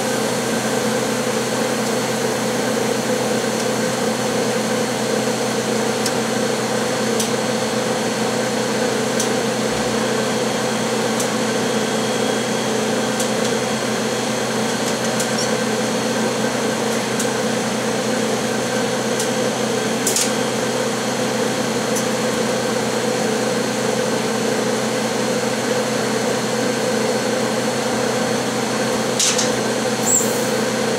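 Steady hum of the running EVG 520IS wafer bonder station, several steady tones over a noise bed. A few faint clicks sit on top of it, with a sharper one about two thirds of the way through and another near the end.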